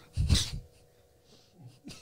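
A man's single short, sharp breath or snort through the nose and mouth, then quiet room tone with a faint steady hum and a small click near the end.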